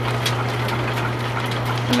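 Overhead line-shaft drive running, with flat belts turning over crowned pulleys: a steady low hum under a continuous whir, with faint repeated ticks.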